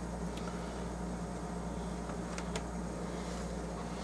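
Quiet room tone: a steady low electrical hum, with a few faint light ticks.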